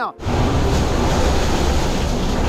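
Loud, steady rush of wind and water with a deep rumble, heard aboard an IMOCA racing yacht sailing fast through heavy seas of several metres. It cuts in sharply just after the start.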